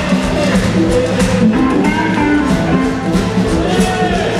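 Live blues band jamming: several guitars playing over bass and a drum kit with a steady beat.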